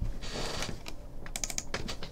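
Hands working at a desk: a brief soft rustle, then a quick run of about six light clicks.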